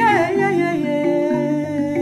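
A Swahili-language song: a singer holds one long note that slides down at the start and then stays steady, over a repeating pattern of short instrumental notes.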